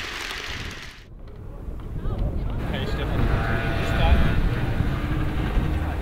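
Outdoor street sound: a steady low traffic rumble with faint voices. It cuts in sharply about a second in, replacing an even hiss from the hall.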